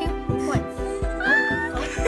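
Background music with a steady beat, over which a baby gives one high squeal that rises and then holds, about halfway through.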